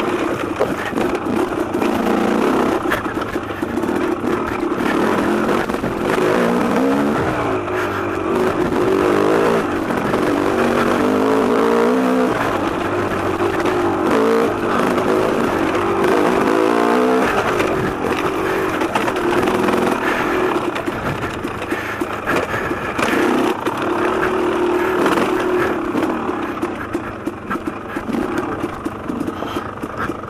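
Dirt bike engine heard close up from the riding bike, its revs rising and falling again and again as the throttle is worked over rough, rocky single-track trail.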